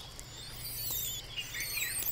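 Faint outdoor animal ambience: thin, high-pitched wavering chirps that come and go over a low steady hum.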